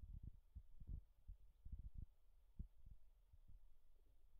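Near silence, with faint, irregular low thuds and rumble on the phone's microphone, several a second.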